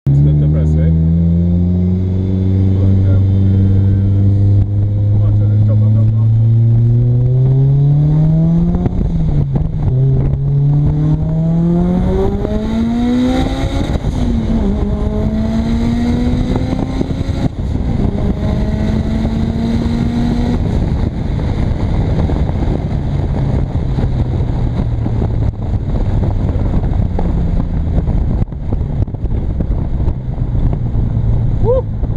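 Mitsubishi Lancer Evolution IV's turbocharged four-cylinder engine heard from inside the cabin, accelerating through the gears. Its pitch climbs in long sweeps broken by shifts, then drops to a steady cruise about two-thirds of the way through.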